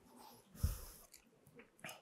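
A man breathing softly close to a clip-on microphone during a pause in speech, with a short low thump about two-thirds of a second in and a faint click near the end.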